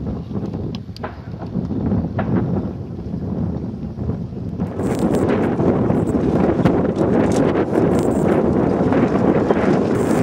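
Wind buffeting the microphone, a steady low rush that grows louder about five seconds in.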